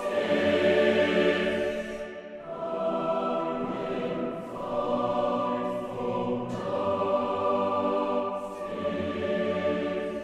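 A sampled virtual choir from the EastWest Hollywood Choirs plugin singing sustained chords, moving to a new chord about every two seconds.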